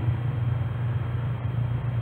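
Room tone: a steady low hum with a faint even hiss and no other events.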